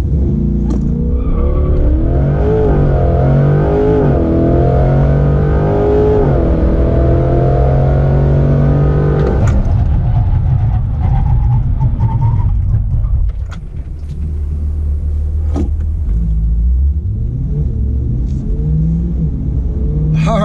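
2020 C8 Corvette's 6.2-litre V8 at full throttle from a standstill, rising in pitch through three quick upshifts. At about nine and a half seconds the revs cut off as the car brakes hard from near 100 mph, and engine and road noise fall away as it slows toward a stop.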